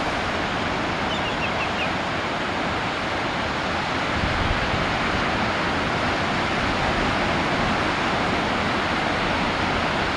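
Ocean surf: a steady wash of breaking waves and whitewater, growing a little louder and deeper about four seconds in. A few short, faint high chirps sound about a second in.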